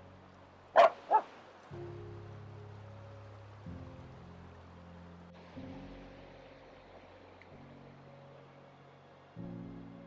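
A dog barks twice in quick succession about a second in. Underneath runs background music of slow, low sustained chords that change every couple of seconds.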